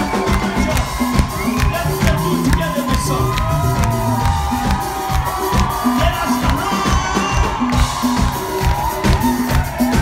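Live band playing a fast Persian pop song with a steady dance beat on drums, bass guitar and keyboard, loud through the venue's sound system, with the crowd cheering and singing along over it.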